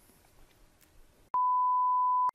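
Near silence, then about a second and a half in, a steady, single-pitched test-tone beep starts abruptly: the reference tone that goes with broadcast colour bars.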